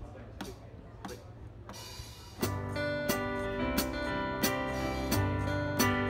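A few evenly spaced sharp clicks, about two-thirds of a second apart, count in the song; about two and a half seconds in a live band comes in together, with a drum kit striking on the beat under sustained guitar chords.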